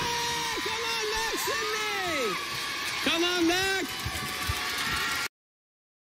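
Show-host shouting "Yeah! Come on back!" with long held yells, over studio noise from the TV show's soundtrack. About five seconds in, the sound cuts off abruptly to dead silence.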